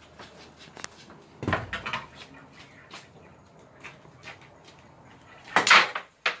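Sharp clicks and knocks of a cue stick and small flat discs on a wooden board-pool table, as the discs strike each other and the wooden rails. The loudest knock comes just before the end.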